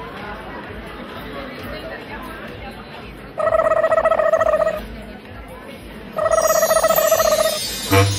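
Telephone-style electronic ringing: two trilling rings, each a little over a second long, about three seconds apart, over a murmuring crowd.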